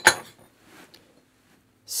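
A single sharp clink of kitchenware being handled on the counter at the start, followed by a few faint handling sounds.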